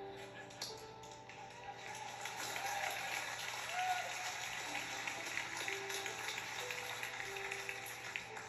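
Soft held notes of a church keyboard pad under congregation applause, which builds about a second and a half in and carries on, with a voice or two calling out.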